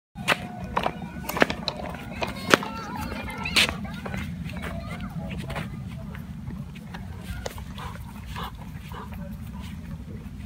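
Hard plastic baby toy knocking and clattering as a German Shepherd mouths and tosses it. There are several sharp knocks in the first four seconds, and the sound turns to lighter scuffs after that.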